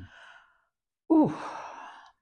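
A woman's drawn-out "Oh" about a second in, starting high, falling steeply in pitch and trailing off into a breathy sigh as she considers a question.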